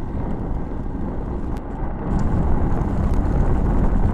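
Wind buffeting the microphone of a bicycle-mounted camera while riding along a road, mixed with road noise; it gets louder about two seconds in.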